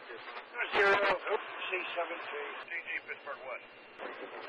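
Railroad scanner radio transmission: a voice coming through a narrow, tinny radio receiver, with a brief burst of noise about a second in.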